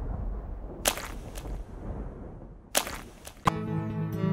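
Trailer sound effects: a fading low rumble, then two pairs of sharp whip-like swishes, the first pair about a second in and the second near three seconds in. Music with held notes comes in shortly before the end.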